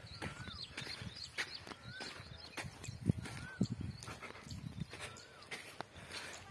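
A bird calling over and over, a short whistle that rises and falls, about every second and a half, with higher chirps between, over scattered sharp clicks.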